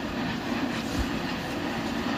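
Silk saree fabric rustling and swishing as it is handled and spread out by hand, over steady room noise.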